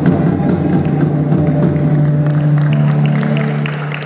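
Live ensemble of traditional instruments and guitar holding a low sustained note at the close of a piece, with scattered sharp ticks coming thicker near the end.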